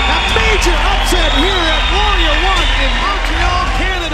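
Excited, shouted voices with rapidly rising and falling pitch over background music.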